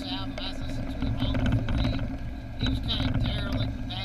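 Steady low drone of a car's engine and tyres heard from inside the cabin while driving, with a voice talking in short spells over it.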